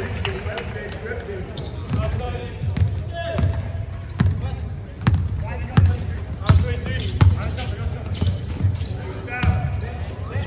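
A basketball being dribbled on an indoor court floor: a steady run of thumping bounces, roughly three every two seconds, starting about two seconds in and ringing in a large hall.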